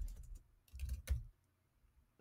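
Computer keyboard typing: two quick runs of keystrokes in the first second and a half, as a search entry is deleted and a new one typed.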